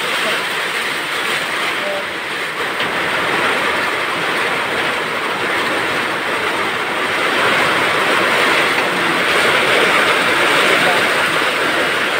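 Heavy typhoon rain pouring down, a dense, steady hiss that grows a little louder about halfway through.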